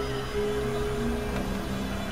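Experimental synthesizer drone music: a steady low hum beneath a long held tone, with lower notes shifting in steps.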